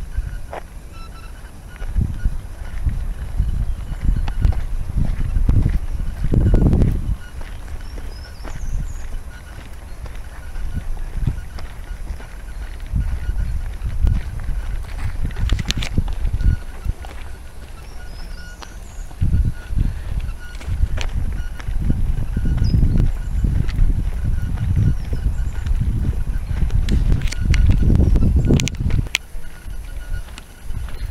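Wind buffeting the microphone in irregular gusts, with footsteps on a path and a few faint bird chirps.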